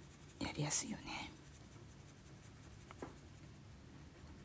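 Paper blending stump (tortillon) rubbing pencil shading into drawing paper: a few soft, scratchy strokes about half a second in, then a single faint tick near three seconds.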